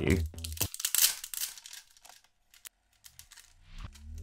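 Thin clear plastic protective film being peeled off the back of a phone, crinkling in a quick run of small crackles for about a second and a half, then trailing off.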